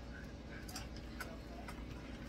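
Faint, irregular light clicks, about three in two seconds, over a low steady room hum.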